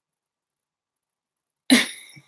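Silence, then near the end a woman coughs once, sudden and loud.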